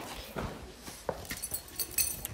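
A horse shifting in its stall: a few soft, scattered knocks and shuffling.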